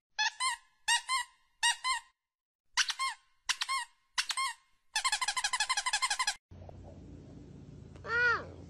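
High, clean squeaks that arch up and down in pitch, timed to a finger pressing a piglet's snout. They come in six pairs, then a fast run of about a dozen that stops abruptly about six and a half seconds in, leaving a faint low hum.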